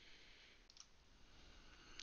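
Near silence: faint room tone with two soft computer-mouse clicks close together, about two-thirds of a second in.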